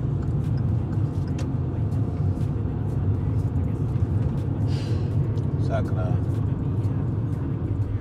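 Steady low road and engine rumble heard inside the cabin of a car driving at highway speed.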